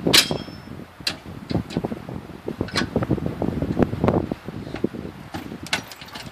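A run of irregular low knocks and rattles, with a few sharp metallic clinks: one near the start, one about a second in, one near three seconds and one near the end. It sounds like gear being handled at a pickup truck's tailgate and trailer hitch.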